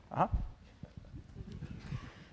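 A brief spoken "uh-huh" with a falling pitch, followed by faint low knocks and rustling room noise.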